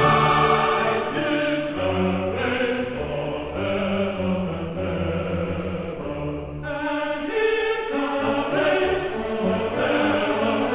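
Choral music: a choir singing long held chords with accompaniment, the harmony shifting about two-thirds of the way through.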